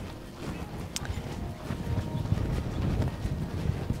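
Wind buffeting the microphone: an uneven low rumble, with one faint click about a second in.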